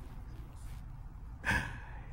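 Low steady room hum, then about one and a half seconds in one short, sharp breathy huff from a person.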